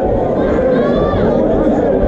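Crowd of spectators chattering and shouting in a large hall, with one voice calling out above the din near the middle.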